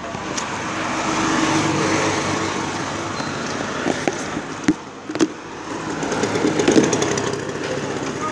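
A motor vehicle's engine running close by, growing louder about a second in and again near the end, with two sharp knocks in the middle.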